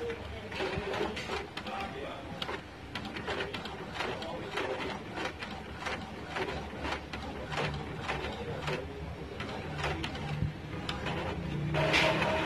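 Epson L1110 inkjet printer running its self-test print after a head cleaning: a steady run of irregular clicks and clatter from the print-head carriage and paper feed. A low hum joins in the later part as the test page feeds out.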